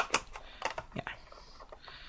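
A clear acetate box being folded and pressed into shape by hand: sharp plastic clicks and crinkles, the loudest right at the start, with a few lighter clicks after.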